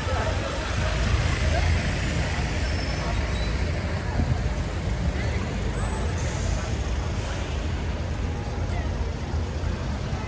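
Busy city street ambience: a steady low rumble of traffic with passers-by talking nearby.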